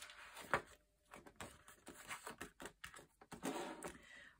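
Quiet desk handling sounds of paper and small plastic drill packets: a sharp tap about half a second in, then a run of small clicks and rustles as binder pages are turned and packets are moved.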